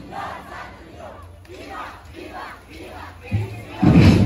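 A group of voices shouting and chanting together in a break in the drumming, with several rising-and-falling calls. A drum hit comes in a little after three seconds, and the drumming starts again just before the end.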